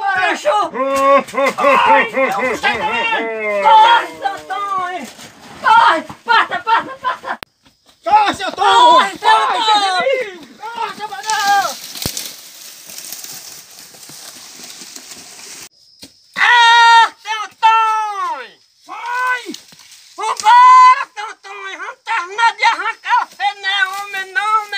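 Men yelling and screaming with high, rising and falling voices and almost no words, with a few seconds of hissing noise in the middle.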